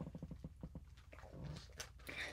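Faint handling noise as things are picked up and moved: a quick run of soft clicks in the first second, then a few scattered taps.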